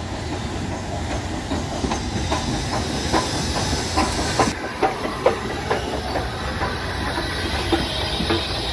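Steam-hauled passenger train rolling past: its wheels click and clack irregularly over rail joints, over a steady hiss of steam.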